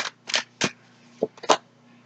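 Tarot cards being shuffled and drawn from the deck: about five short, crisp card snaps, irregularly spaced over the first second and a half, then a pause.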